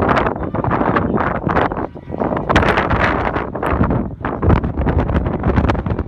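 Strong wind buffeting the microphone, a loud, gusty rumble and rush that rises and falls unevenly.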